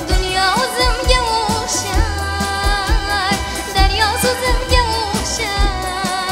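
A female singer with an orchestra of Uzbek national instruments sings a wavering, ornamented melody with vibrato and slides over sustained accompaniment and a regular low beat.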